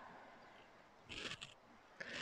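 A slow exhale fading out, then near silence with one brief faint hiss about a second in.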